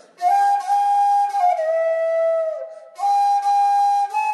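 Bamboo transverse flute playing a slow film-song melody with a breathy tone: a held note that steps down twice and trails off, a short breath, then a new higher held note.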